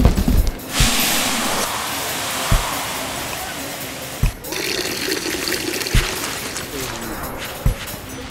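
A long rushing pour of powder, a cartoon sound effect of flour spilling onto sand, that stops abruptly about four seconds in and gives way to a softer hiss. Background music with a low beat about every second and a half runs underneath.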